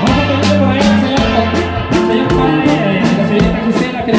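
Mexican conjunto band playing live dance music: drum kit, bass guitar and guitar together over a steady beat.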